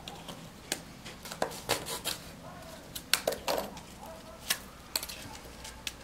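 Scattered small clicks and scrapes of plastic being worked: a knife cutting flexible corrugated PVC conduit, and the conduit being pushed into a plastic 4x2 electrical box.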